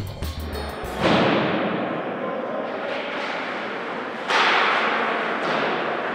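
Background music with a drum beat cuts off about a second in. It gives way to a steady noisy rush of ice rink sound from hockey play, which jumps louder about four seconds in.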